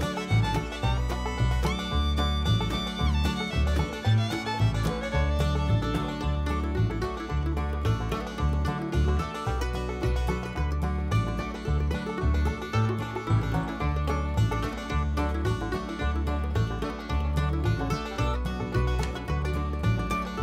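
Upbeat bluegrass-style background music with banjo and fiddle over a steady bass beat.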